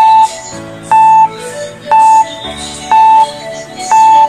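Electronic countdown-timer beeps, one short high beep each second, five in all, counting down the time to answer a quiz question. Light background music plays underneath.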